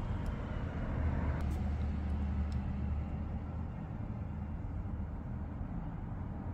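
Low background rumble, swelling into a louder low hum from about one to nearly four seconds in, with a few faint ticks.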